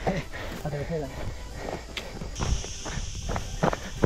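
Footsteps of trail runners on a rocky dirt path: a string of short crunching steps, with faint voices in the first second. A low rumble of wind on the microphone runs throughout, and a steady high hiss sets in about halfway.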